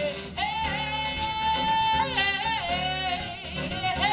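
A woman's voice holding one long sung note, which dips and wavers lower about two seconds in, over a strummed acoustic guitar.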